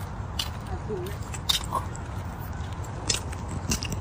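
Footsteps crunching on a gritty paved path: sharp crisp scuffs at a walking pace, some steps louder than others, over a steady low rumble.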